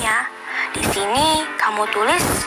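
A voice speaking over light background music.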